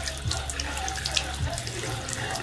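Water running from a kitchen tap and splashing into a sink.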